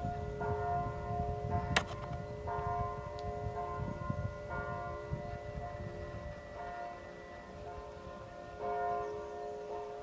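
Church bells ringing the noon peal, struck about once a second, each stroke's tones ringing on as the next comes, over a low rumble. A sharp click sounds just under two seconds in.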